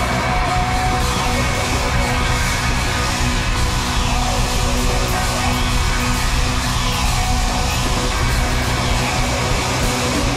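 Live pop-rock band playing a steady groove on electric bass, drum kit and congas. A large theatre audience yells and cheers along.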